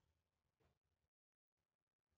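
Near silence: no audible sound between the keyboard typing and the next words.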